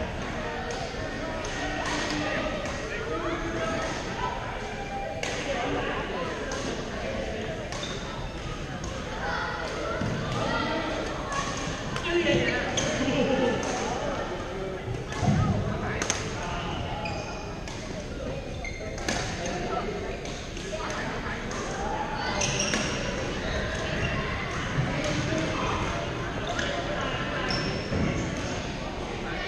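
Echoing sports hall with badminton played on several courts: sharp racket-on-shuttlecock strikes at irregular moments over a steady background of players' voices.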